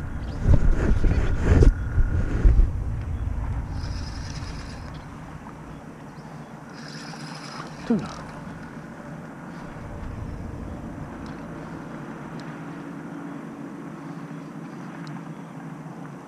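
Fishing reel clicking and whirring as line is worked in against a hooked fish, with two brief higher-pitched bursts about four and seven seconds in. Loud knocks from handling against the microphone in the first couple of seconds.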